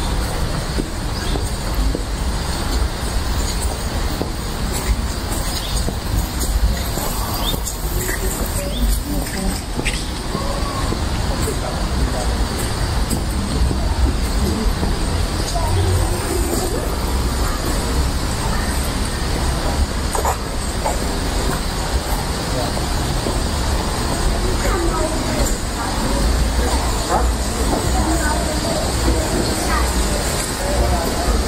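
Outdoor park ambience: indistinct voices of passers-by over a steady low rumble.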